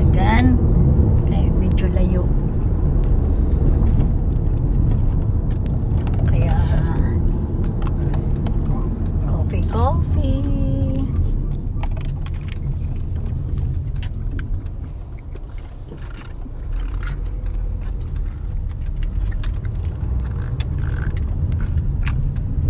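Road noise inside a moving car's cabin: a steady low rumble, easing briefly about two-thirds of the way through, with short bits of voice now and then.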